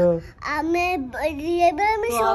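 A little girl's high-pitched voice in drawn-out, sing-song syllables that glide up and down in pitch, with a short break about half a second in.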